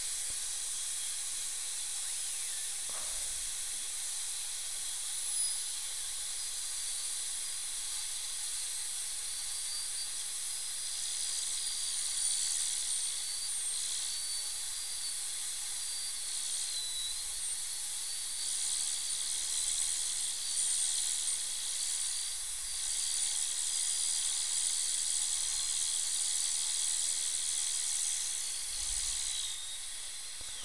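High-speed dental handpiece with water spray cutting a tooth down for a crown: a steady high hiss under a thin whine whose pitch wavers and dips as the bur bears on the tooth.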